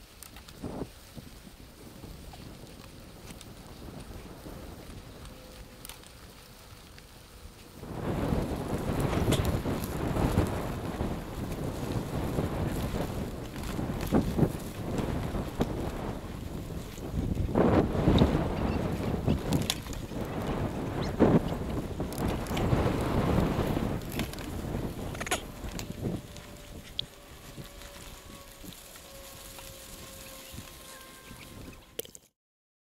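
Wind rushing over the microphone and a mountain bike rattling and knocking over a rough dirt trail at speed. The sound is quieter at first and gets much louder a little over a quarter of the way in, with frequent sharp knocks, then settles down again near the end.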